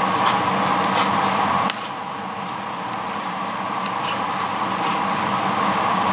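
Steady mechanical hum, as of a sports hall's ventilation, with a few faint knocks in the first two seconds. The hum drops suddenly in level a little under two seconds in and then slowly swells back.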